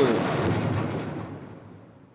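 A loud boom sound effect fading away over about two seconds, with the end of a man's voice reading the section title at the very start.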